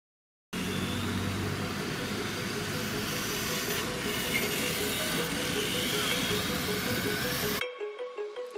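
A loud, rough vehicle-like noise cuts in about half a second in and stops abruptly just before the end, where music with a pulsing beat takes over.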